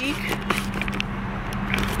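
Handling noise on the camera's own microphone, a few clicks and scrapes in the first second, as the camera is screwed onto a compact tripod. Under it runs a steady low hum in the car cabin.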